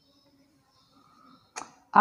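Faint, squeaky strokes of a marker pen drawing on a whiteboard, then a short swish about one and a half seconds in.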